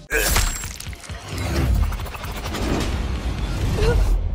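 Glass shattering with a crash that starts suddenly, followed by a few seconds of breaking, clattering debris over a deep rumble.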